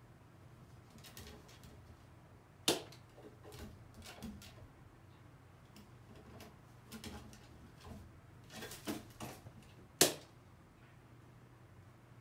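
A crow moving about on wooden perches: scattered taps and knocks, with two sharp knocks about three seconds in and again about ten seconds in, over a low steady hum.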